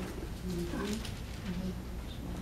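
A few short, quiet, low murmured voice sounds, over a steady low hum of room noise.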